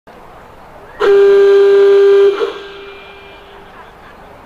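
One long, steady horn blast, lasting just over a second and starting about a second in, typical of the signal that tells a showjumper to begin the round. It cuts off sharply and echoes briefly over the arena's background noise.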